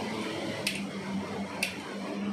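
Air cooler's newly fitted electric motor running with a steady low mains hum, with two sharp clicks about a second apart.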